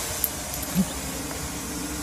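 Steady low mechanical hum and hiss in the background, with a faint held tone and a small click near the start.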